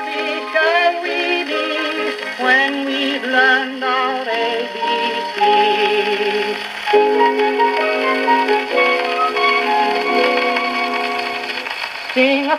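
A 1929 shellac 78 rpm record of a small orchestra playing on a wind-up portable gramophone. It plays a short instrumental passage between two nursery-rhyme songs: quick phrases at first, then long held, wavering notes. The sound is thin, with no bass, as it comes through the acoustic soundbox.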